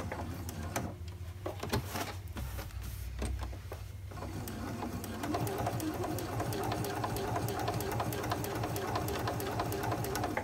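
Domestic sewing machine stitching through a fused appliqué and the layers of a quilt in one pass, with a rapid, even run of needle clicks over the motor hum. It sews in uneven spurts at first, then runs steadily and a little louder from about halfway.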